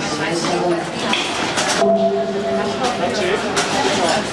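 Indistinct chatter of several people in a large, echoing indoor hall. A drawn-out pitched sound lasts about a second near the middle.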